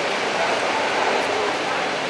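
Steady outdoor street background noise, an even hiss with no distinct event standing out.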